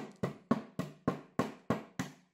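A small ceramic flowerpot, freshly planted with an echeveria, being knocked lightly against a hard surface in an even run of about eight knocks, three or four a second, to settle the newly added potting mix.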